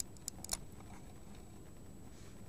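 Handling of a handheld camera: a few quick small clicks in the first half second, over faint steady low background noise and a thin, steady high whine.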